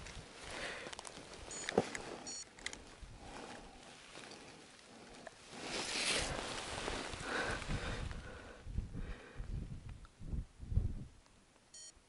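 Faint rustling and handling noise with a few short, high electronic beeps, two about two seconds in and one near the end, as a caught zander is hung on a digital hand scale to be weighed.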